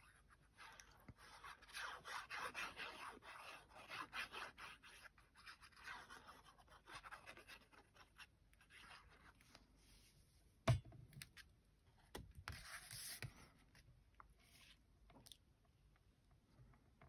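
Fine nozzle of a liquid glue bottle scratching and rubbing faintly across card stock in a run of short strokes as glue is drawn onto a paper panel. A little past halfway comes a single sharp knock, followed by a brief rustle of card being handled.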